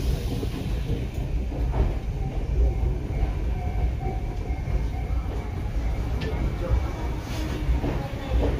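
Ichibata Electric Railway train heard from inside the car, a steady low rumble of the wheels and running gear as it pulls into a station, with a faint whine in the middle.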